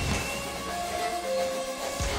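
Electric guitar in a live metal band holding ringing notes, one and then a lower one, over a thinned-out mix whose low end drops away near the end.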